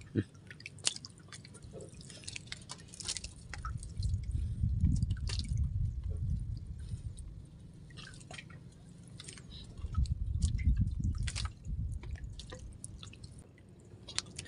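Water dripping and lapping at a small wooden outrigger boat, with scattered small clicks. There are two louder spells of low rumble, about four and ten seconds in.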